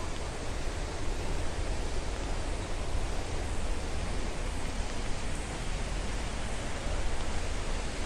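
Steady rush of a waterfall and the rocky river below it, an even wash of water noise with no breaks and a low rumble underneath.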